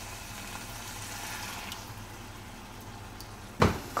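Chicken keema mince cooking in tomato sauce in a pot on a high gas flame, sizzling and bubbling steadily over a low, even hum.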